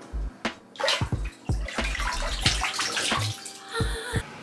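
Bath water sloshing and splashing in a filled bathtub as a person stands up out of an ice bath, with water streaming off her. The splashing is heaviest from about a second in until nearly three seconds, then dies down.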